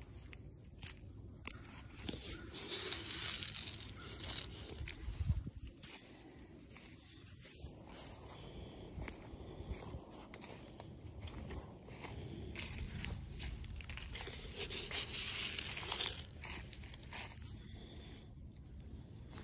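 Footsteps crunching through dry fallen leaves and pine straw, an uneven run of crackling steps with bursts of leaf rustle.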